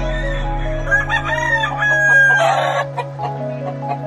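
Gamefowl rooster crowing once, a call of about two seconds starting about a second in that rises, holds a steady note and ends in a rasp, over background music.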